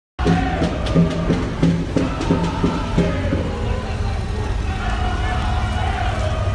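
Rhythmic chanting to a beat, about three strokes a second, over the steady low engine rumble of an arriving bus and motorcycle. The chant drops away after about three and a half seconds, leaving the engine rumble.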